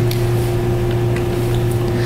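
A steady low hum with a fainter, higher steady tone above it. It is a constant background drone of the room or its sound system, with no change through the pause.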